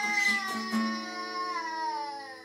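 A toddler's long held, high sung note, slowly falling in pitch and fading toward the end: the drawn-out close of "blast off" after a countdown, over an acoustic guitar chord left ringing.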